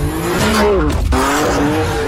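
Sports car engine revving hard: its pitch climbs, drops sharply about a second in, then climbs again. Tyres squeal under it as the car drifts.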